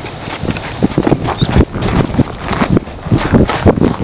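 Footsteps walking, an uneven run of knocks a few times a second.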